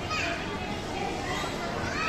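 Background sound of young children playing, with faint, distant voices and chatter but no clear nearby words.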